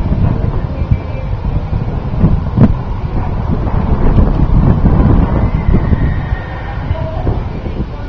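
Wind buffeting the camera's microphone: a loud, uneven low rumble, with one sharp click about two and a half seconds in.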